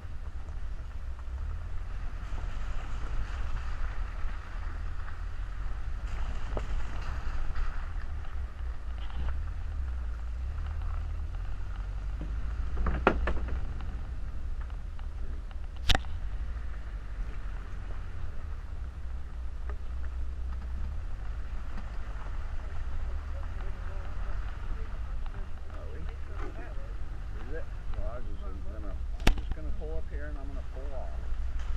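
A VW Vanagon driving slowly over a rough, puddled dirt track: a steady low rumble of wind and road noise on the microphone, broken by a few sharp knocks, the loudest about halfway through and another near the end.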